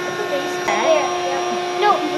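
Electric air-mattress pump running with a steady hum, inflating the air mattress. Children's voices are heard over it.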